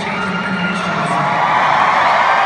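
A large crowd cheering and shouting, swelling louder toward the end.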